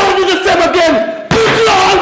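A man shouting in a raised, strained voice: two loud phrases with drawn-out, held syllables, the second starting abruptly just past halfway.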